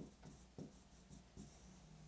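Pen stylus writing on an interactive display screen: faint, irregular short strokes and taps against a low room hum.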